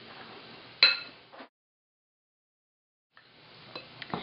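A single clink of a metal spoon against a glass mixing bowl about a second in, ringing briefly before it fades. The sound then cuts out completely for over a second and a half.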